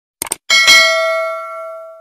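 Subscribe-button notification sound effect: two quick clicks, then a bell chime struck twice in quick succession that rings out and fades over about a second and a half.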